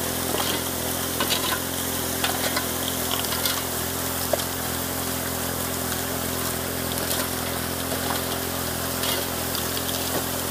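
Water jets spraying hard into a high banker's hopper from angled slices cut in its spray plumbing, over the steady hum of the small engine-driven water pump feeding it. Occasional short clicks of gravel land in the hopper.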